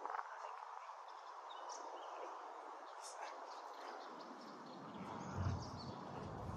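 Faint open-air ambience: a steady hiss with a few short, faint bird chirps, and low wind rumble on the microphone coming in near the end.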